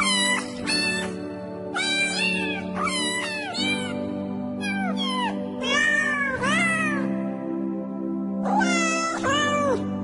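Cats meowing again and again, short calls that rise and fall in pitch, over background music with steady held notes. The meows pause briefly about three-quarters of the way through.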